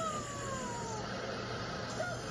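Television show audio played through a monitor's speaker: a single high tone slides down in pitch over about a second, then gives way to a steady hiss.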